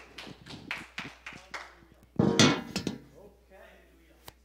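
Scattered clapping from a congregation, a few people applauding irregularly over murmured voices, with one voice calling out loudly about two seconds in before things settle.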